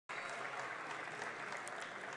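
Faint, steady applause from members seated in a large assembly chamber.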